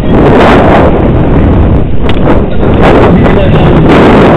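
Wind rushing loudly over a bike-mounted camera microphone as a BMX rider races down the start ramp just after the gate drops, a steady dense noise with the bike's rolling and rattle under it.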